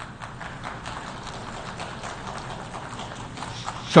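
Audience applauding: many hands clapping at a steady level, stopping near the end.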